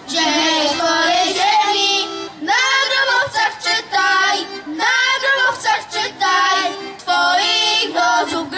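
A group of children, boys and girls, singing a song together into stage microphones, in short sung phrases with brief breaks between them.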